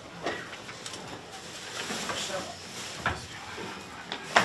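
Clothing and kit rustling as footballers change, with a couple of sharp knocks, the sharpest about three seconds in, under low background voices.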